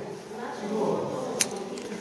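Indistinct voices of onlookers talking in the background. There is one sharp click about one and a half seconds in.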